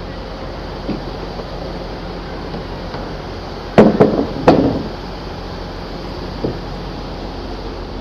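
Portable metal boarding ramp clanking three times in quick succession as it is set against a train's door step, over a steady low hum. A lighter knock follows a couple of seconds later.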